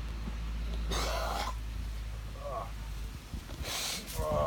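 A man clearing his throat with a harsh, rasping cough about a second in, then a short groan, then a hissing breath near the end, from the burn of a Carolina Reaper chili.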